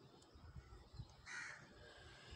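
Near silence, with one faint short call, like a bird's, about a second and a half in.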